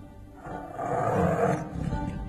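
A tiger's roar as a sound effect, swelling from about half a second in and fading near the end, over steady dramatic background music.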